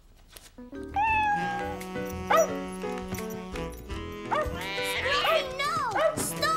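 Cartoon music with held notes begins about half a second in, under a cartoon cat's meows and yowls and a dog's barks as the dog chases the cat, with a sharper hiss-like outburst near the end.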